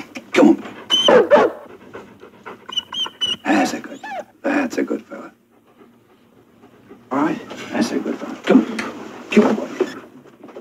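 German Shepherd dog barking repeatedly in short loud bursts, with a break of about two seconds just past the middle before the barking starts again.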